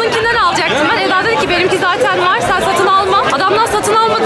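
Crowd chatter: many people talking over one another at once, steady throughout.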